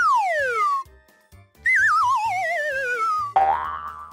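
Cartoon sound effects over light background music with a soft beat: first a quick falling whistle glide, then a longer falling whistle that wobbles as it drops, then a short rising tone near the end.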